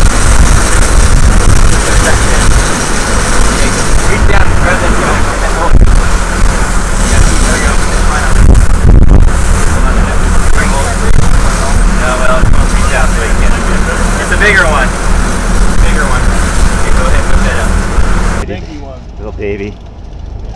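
Sportfishing boat's engines running steadily under way, with wind and the wake rushing over the microphone. Near the end the sound cuts abruptly to a quieter, duller mix.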